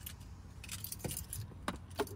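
Car keys jingling with a few light clicks and rattles at the ignition, over a faint low hum.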